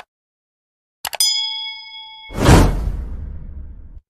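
Subscribe-button animation sound effects: a short click, then a second click about a second in with a bright bell ding that rings for about a second, followed by a whoosh that swells and fades away.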